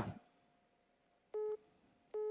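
A single short telephone-line beep about a second and a half in, in a pause that is otherwise near silence.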